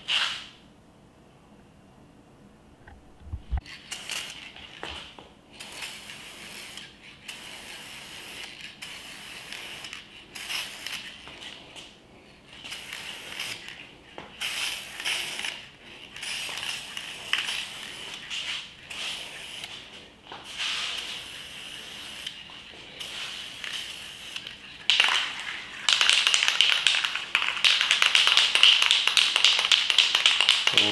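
Aerosol spray-paint can hissing in repeated short bursts from about four seconds in, then spraying longer and louder near the end, as a light coat of paint goes onto a plastic engine cover.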